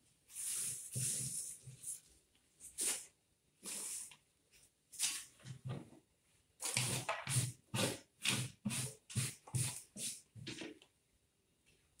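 Repeated brushing and wiping strokes as the flower-arranging work table is cleared of leaf and stem debris: a few scattered strokes at first, then a quicker run of two or three a second.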